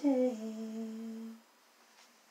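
A woman singing unaccompanied into a handheld microphone, holding the last note of the song. The note steps down slightly in pitch just after it begins, holds steady, and stops about one and a half seconds in.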